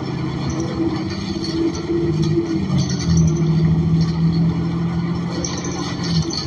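Cabin sound of a New Flyer XN40 city bus under way, heard from the rear seats: the Cummins Westport ISL G natural-gas engine and Allison automatic transmission drone steadily with road noise. The hum dips briefly about two and a half seconds in, then settles again.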